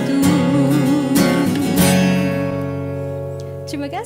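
A woman's sung phrase with vibrato over an acoustic guitar accompaniment, ending about two seconds in. The guitar chord is then left ringing and slowly fading.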